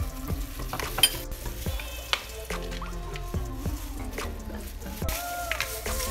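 Metal spoon clinking and scraping against a glass bowl while honey is spooned in and mixed, with several sharp clicks; the loudest comes about a second in.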